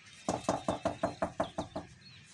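A tuff tile mould filled with concrete mix is knocked against the work table in a quick run of about a dozen knocks, some seven a second, settling the mix in the mould.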